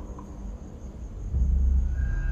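Dramatic TV underscore music thins to a low rumble, with a deep bass swell just over a second in, before sustained music tones come back in.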